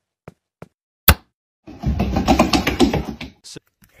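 A duck's webbed feet slapping on a concrete floor in a few short steps, then one sharp loud knock about a second in. After it comes a heavier rumbling clatter lasting over a second.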